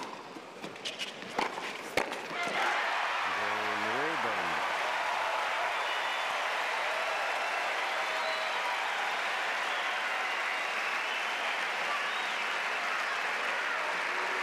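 Tennis ball struck back and forth in a rally, sharp hits about two-thirds of a second apart, ending about two seconds in. Then a stadium crowd applauds and cheers steadily, with one voice shouting out about four seconds in.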